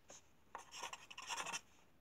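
Pen or pencil writing on paper: a quick run of short, quiet scratchy strokes, starting about half a second in and stopping shortly before the end.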